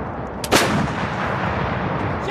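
A 155 mm towed howitzer, an M777, fires one round about half a second in: a sharp blast followed by a long rolling echo that fades away.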